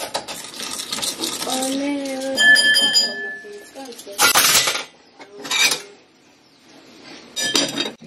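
A metal fork stirs and scrapes around a glass mixing bowl, then gives one ringing clink against the glass. A few short knocks and rustles follow, ending in another clink as a plate is set over the bowl.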